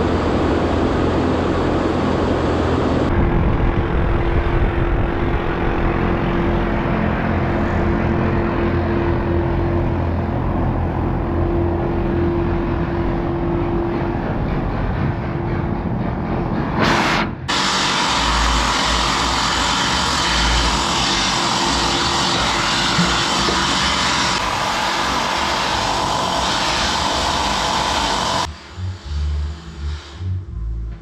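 Loud, steady machinery noise inside a ship's working deck, with a held droning tone. The noise changes character abruptly a few times and turns lower and uneven near the end.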